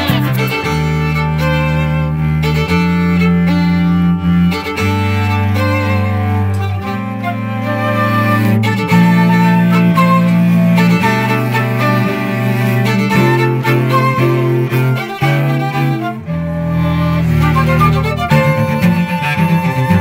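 Instrumental music by a string quartet: bowed violin and cello, with long low notes held for a second or two each beneath busier melodic lines higher up.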